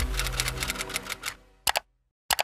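Outro logo sound effect: a fast run of clicks over a low tone, fading out, then one short sharp burst near the end.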